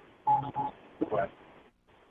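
Brief, indistinct voices over a telephone line, with a short steady tone near the start, then the line goes quiet.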